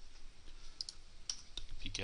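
A few light, sharp clicks of a computer mouse and keyboard being worked, spaced out over the second half.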